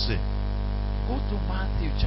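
Steady electrical mains hum in the recording, with a faint voice heard briefly in the second half.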